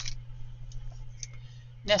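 A few faint, short clicks and taps of small card and paper pieces being handled, over a steady low hum.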